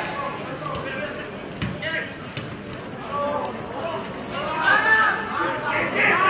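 Footballers calling and shouting to each other on the pitch, with three sharp thuds of the ball being kicked in the first couple of seconds.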